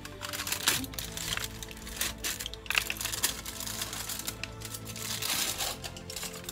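Aluminium foil being peeled off and crinkled, with irregular crackles, over steady background music.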